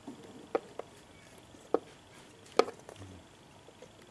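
Four sharp, isolated plastic clicks and taps spread over a few seconds, the third the loudest, as a homemade fuse and relay box and its wire connectors are handled and pressed into place in a scooter's plastic battery compartment.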